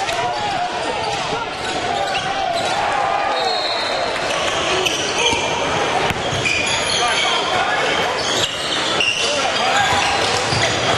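Live basketball game sound on a hardwood gym court: a ball dribbling, short high squeaks of sneakers, and indistinct voices of players and spectators.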